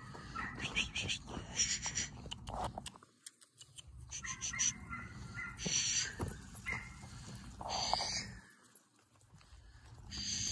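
Feet crunching on frozen, straw-covered ground in short, irregular bursts as people and animals move about a sheep pen.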